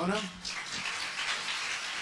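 Audience of students applauding, a steady clatter of many hands clapping that starts about half a second in, just after a few words from a man at a microphone.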